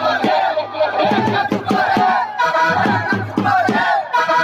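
Loud live dance music through a PA, a singer's voice over steady percussion, with a crowd's shouting voices mixed in.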